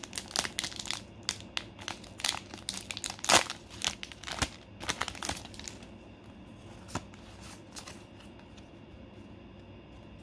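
Plastic foil booster-pack wrapper crinkling and tearing as it is ripped open by hand: a dense run of crackles, loudest a little past three seconds in, that dies down to a few scattered ticks after about six seconds.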